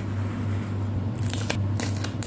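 Clear plastic sticker sheets being handled, giving a few sharp crinkling clicks from a little past halfway, over a steady low hum.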